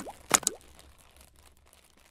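Animated logo-reveal sound effects: two quick plops, each with a short rising swoop, within the first half-second, then a faint tail that dies away.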